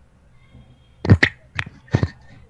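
Four short, sharp noises picked up by a video-call microphone, starting about a second in, over a faint background hiss.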